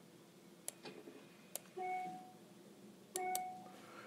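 A few faint clicks, then two short electronic beeps, each about half a second long and about a second and a half apart.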